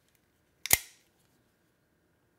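Cobratec Large FS-X out-the-front knife snapping its double-edged dagger blade back into the handle: a sharp mechanical snap about two-thirds of a second in, a faint tick followed at once by the louder one.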